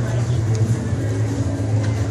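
Steady low hum of a large indoor arena, with faint distant voices in the background.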